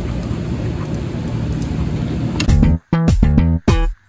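A steady low rumble of room noise for about the first two and a half seconds, then background music with guitar and bass starts abruptly, punchy and stopping sharply between phrases.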